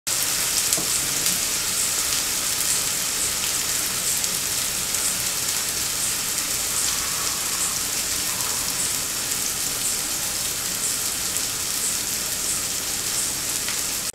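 Masala-coated catla fish slices shallow-frying in oil on a flat griddle: a steady sizzle with small crackles scattered through it.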